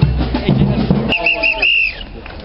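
Music with a steady drum beat, which stops about halfway through. Then a whistle gives four short high toots and one longer one.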